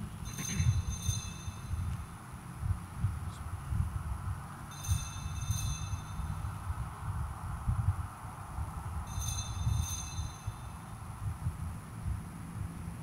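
Altar bells rung at the elevation of the chalice: three short rings, each a quick double shake, about four and a half seconds apart. A low steady rumble runs underneath.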